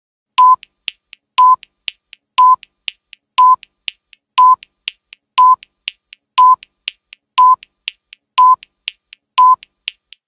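Countdown timer sound effect: ten short, identical mid-pitched beeps, one every second, each with a sharp click, and fainter ticks between them.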